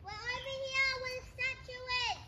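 A young child singing one long, held note on a steady pitch, broken by a couple of short pauses, and ending with a falling slide.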